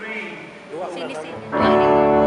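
A band starts playing about one and a half seconds in: a loud chord on an electric guitar rings out over low bass notes, opening a live song.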